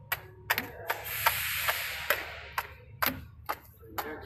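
Sharp clicks and knocks of tape rolls and cores being handled on the rewind shafts of a tape slitting machine, over a low steady machine hum, with a hissing rush lasting about a second near the middle.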